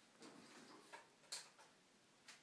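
Near silence broken by a few faint, sharp clicks, the loudest about one and a half seconds in.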